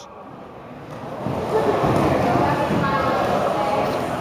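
Background voices of spectators and coaches talking in a large, echoing gymnasium, no words clear. The sound drops sharply right at the start and builds back up about a second in.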